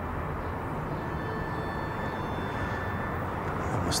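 Steady outdoor background noise, an even hiss and low rumble with no distinct events, like distant city traffic; a short sharp click right at the end.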